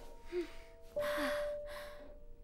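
Soft background music of held notes, a new note coming in about a second in, with a cartoon character's breathy gasps over it.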